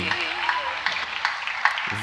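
Studio audience applauding, a dense patter of claps.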